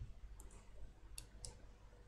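A few faint, short clicks, spaced unevenly, over an otherwise quiet room with a low hum.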